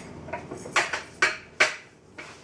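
Hard plastic clicking and knocking as a kitchen food processor is opened and its lid and grating disc are lifted off, with three sharp knocks in the second half.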